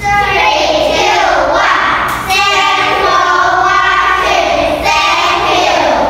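A group of young children singing together in unison, with a brief break between phrases about two seconds in.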